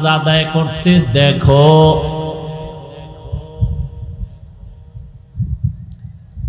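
A man's voice chanting in the melodic sing-song style of a waz preacher, long held notes that end about two seconds in and die away with echo. Faint low thumps follow.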